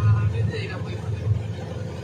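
An engine running with a steady low hum, with people's voices over it in the first second.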